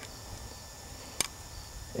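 A single short click about a second in as the CMI Rope Jack's rope cam is opened to take the device off the rope, over a faint steady outdoor background.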